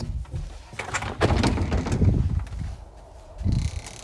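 Wind buffeting the phone's microphone: irregular low rumbling gusts, loudest for about a second from just past the one-second mark and again briefly near the end, after a sharp click at the very start.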